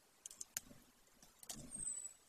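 Golden eagle tearing at prey on its stick nest: a few sharp clicks and soft rustles of beak and feet working the carcass and nest material. A thin, high whistle glides slightly down near the end.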